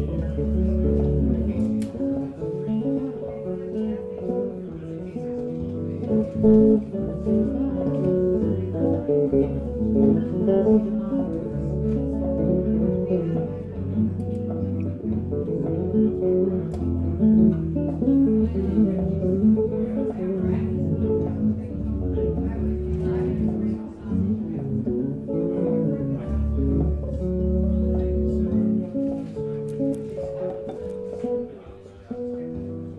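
Solo multi-string Zon electric bass guitar played live, with looped layers: deep low notes coming and going every few seconds under plucked chords and melody higher on the neck.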